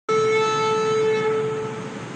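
Shofar (ram's horn) blast: one long, steady note that tails off near the end.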